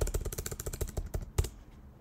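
Rapid typing on a computer keyboard: a quick run of keystrokes that stops about a second and a half in.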